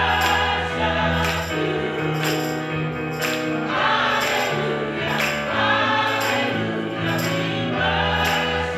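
Gospel choir singing in harmony over organ and a steady bass line, with a regular beat of sharp percussive hits.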